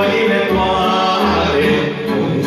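Live Romanian folk band music: a man singing into a microphone over amplified backing with a recurring bass pulse.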